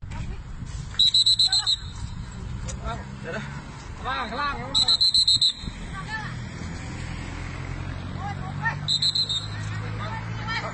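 An electronic alarm beeping quickly and high-pitched in three short bursts, about four seconds apart, over people's voices and a low steady hum.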